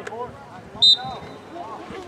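A single short, sharp blast of a referee's whistle about a second in, over the background chatter of voices around the field.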